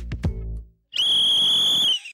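One long, steady blast of a sports whistle about a second in, lasting about a second: a coach calling time on football practice.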